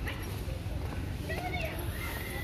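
Outdoor ambience while walking: a steady low rumble of wind on the phone's microphone, with distant voices and a short wavering pitched call about one and a half seconds in.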